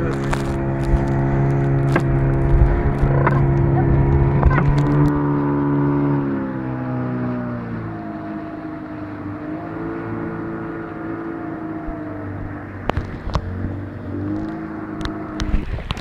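A small boat's outboard motor running steadily, then throttled back about six seconds in, its pitch and loudness dropping as the boat slows toward shore, with water washing past the hull.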